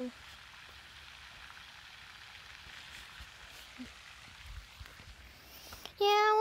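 Small floating pond fountain spraying water that falls back onto the pond surface: a steady, faint hiss of splashing water.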